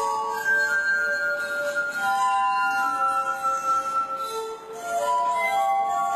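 Glass harp: drinking glasses played by rubbing their rims, giving clear sustained tones that overlap in a slow melody, each note held for a second or two. The sound dips briefly about four and a half seconds in before the next notes swell up.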